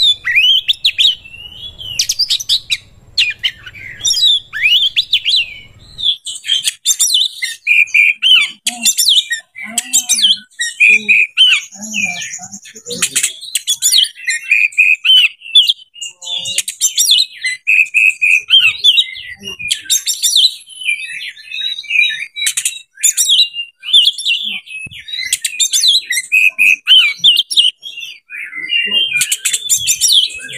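Oriental magpie-robin (kacer) singing a long, varied song of rapid whistles, trills and sharp chattering notes, with barely a pause.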